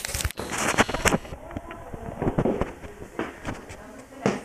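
Crackling, rustling handling noise on a handheld camera's microphone, loudest in the first second or so, then scattered knocks and rubs.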